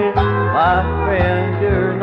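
Country band playing an instrumental break with no singing: a bass line pulses under guitars, and a lead instrument slides up between notes about halfway through.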